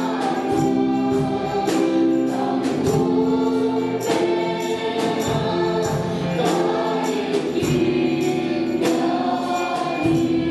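A small worship group of mostly female voices singing a hymn chorus in unison through microphones, over live band accompaniment with a steady percussion beat.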